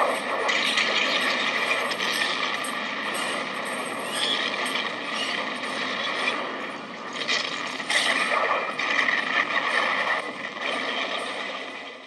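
Battle din from a film soundtrack: dense, continuous crackling of musket and cannon fire, with a louder flurry of shots about eight seconds in.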